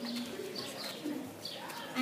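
Birds calling outdoors: repeated short high chirps, with a few brief low cooing notes.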